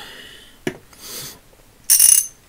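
Hand tools being handled on a cloth-covered bench: a light click about two-thirds of a second in as the needle-nose pliers are put down, a brief soft rub, then a louder sharp metallic clack near the end as the reassembled vintage 1/2-inch drive ratchet is picked up.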